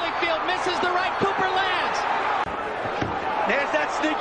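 Boxing broadcast sound: arena crowd noise with shouting voices and a few dull thuds, with a brief dropout about halfway through.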